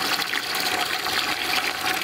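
Water running from a sink faucet into a large aluminium stock pot that holds a turkey, a steady stream filling the pot.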